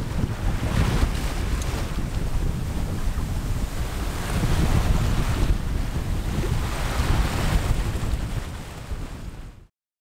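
Wind buffeting the microphone over the rushing of the sea around a sailboat under way. It cuts off abruptly just before the end.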